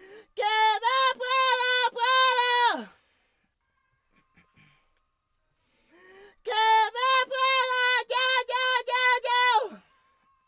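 High tenor voice singing a run of short repeated notes near C5, each phrase ending in a sharp falling slide; the phrase comes twice with a pause of a few seconds between.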